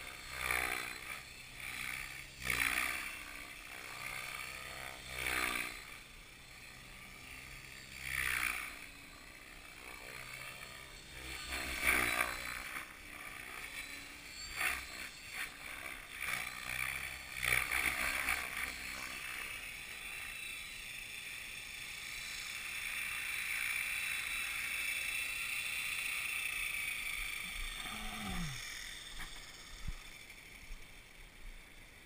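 Radio-controlled helicopter in flight, its rotor and motor making a steady high whine. The whine grows louder and steadier in the last third as the helicopter comes in close, and a falling tone near the end suggests the motor spooling down after landing. Gusts of wind buffet the microphone through the first two thirds.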